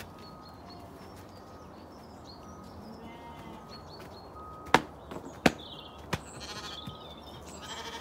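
Sheep bleating faintly in the distance, with three sharp clicks about two-thirds of a second apart in the second half.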